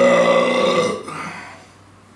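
A man's loud, drawn-out burp, lasting about a second and trailing off, brought up by the fizzy cola he has just been drinking.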